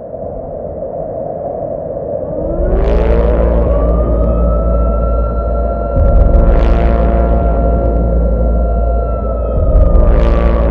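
Electronic intro sound design under an animated logo. A steady drone grows louder, a tone glides upward about two and a half seconds in as a deep bass rumble enters, and three whooshes swell up, roughly three and a half seconds apart.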